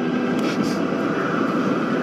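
A steady low rumble from the film's soundtrack, with a little faint hiss about half a second in.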